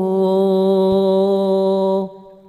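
A man's voice holding one long, steady sung note of an Arabic devotional chant, amplified through a microphone and loudspeakers, cutting off sharply right at the end.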